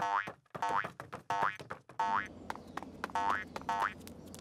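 A string of short cartoon 'boing' spring sound effects, about six in a row, each a brief rising twang repeated roughly every two-thirds of a second. Soft background music comes in under them about halfway through.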